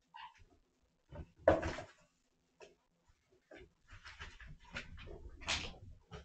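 Cats eating wet food: irregular wet chewing, licking and smacking sounds that come closer together in the second half, with one louder sound about a second and a half in.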